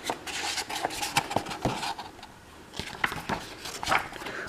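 Stiff paper pages of a hardcover art book being turned and handled: rustling with short taps and scrapes, going quieter for a moment a little after two seconds in.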